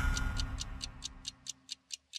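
Clock-like ticking from a title jingle, about four to five ticks a second, over the fading tail of its closing music chord.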